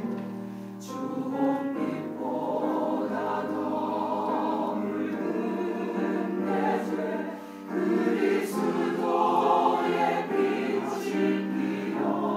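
Mixed church choir of men's and women's voices singing a sacred anthem in sustained chords, with a short break between phrases about seven seconds in.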